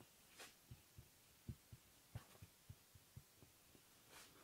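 Near silence with faint, irregular soft taps and a couple of brief scratchy strokes from a marker writing on a whiteboard.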